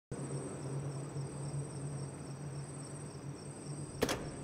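Crickets chirping steadily in a night-time ambience, a fine high trill with evenly repeating pulses, over a low steady hum.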